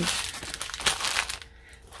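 Crinkling and rustling of a folded diamond painting canvas being pulled out and unfolded, loudest in the first second and dying down near the end.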